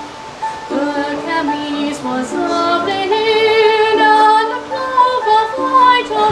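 A woman singing a medieval song to her own small harp accompaniment, with a long held note wavering in vibrato about halfway through.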